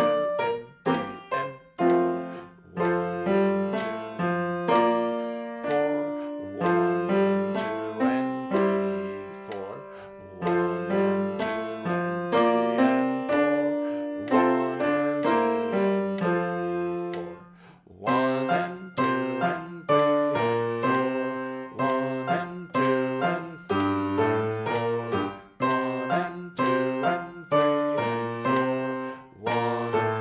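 Grand piano played with both hands: a simple reading piece in F taken at a steady, moderate tempo of 63 beats a minute, with a metronome ticking along. The playing dips to a short gap about 18 seconds in, then carries on.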